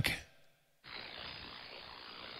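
Steady faint hiss of received band static from an ANAN-7000DLE transceiver on the 11-metre band, with its highs cut off by the receive filter. It starts about a second in, after a brief silence as the radio switches from transmit to receive.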